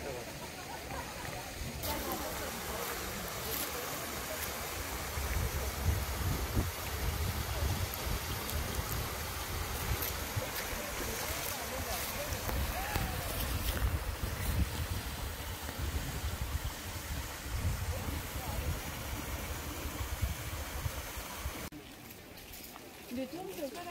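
Steady rush of a shallow mountain stream spilling over a small stone cascade, with a low wind rumble on the microphone and faint voices of passing hikers.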